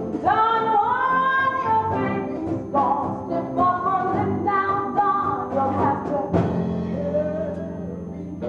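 A woman singing a show tune over instrumental accompaniment, holding and sliding between notes in phrases.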